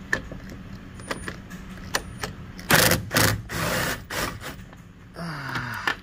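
Socket tool loosening a 10 mm bolt at a truck's door hinge: a few sharp clicks, then two loud bursts of ratcheting about halfway through as the bolt turns.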